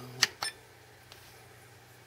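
Two sharp clicks about a fifth of a second apart from a front push-button on a SkyRC MC3000 battery charger being pressed, followed by a faint tick about a second in.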